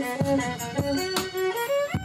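Solo violin bowed in a short phrase of held notes that step up and down in pitch, ending with a slide upward.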